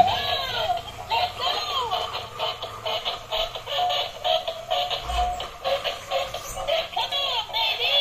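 Battery-operated dancing Elsa doll toy playing its built-in electronic song: a synthesized singing voice with gliding notes over a quick, even beat.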